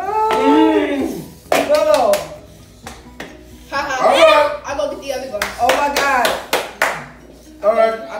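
Several people making wordless vocal sounds, drawn-out and exclaiming, as they react to the heat of spicy noodles, with clusters of sharp claps a little after the start, past the middle and near the end.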